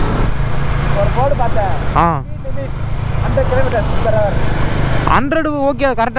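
Motorcycle cruising at steady road speed, with a loud, constant low rumble of engine and wind buffeting on the camera microphone. A voice speaks briefly a few times, most clearly near the end.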